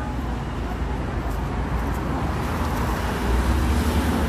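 Road traffic on a busy city street: a steady rumble of passing cars and a bus, growing louder over about the last second.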